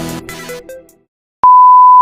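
The end of an electronic music intro, cut off about a second in, then after a short silence a loud, steady 1 kHz test-tone beep of the kind that goes with television colour bars.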